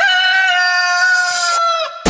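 A rooster's crow: one long, steady call held for nearly two seconds that dips in pitch and fades at the end. It falls in a break where the electronic dance beat stops.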